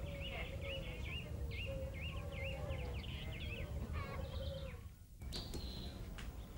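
Birds chirping: a repeated series of short rising-and-falling calls, about two or three a second, over a steady low hum, stopping suddenly about five seconds in.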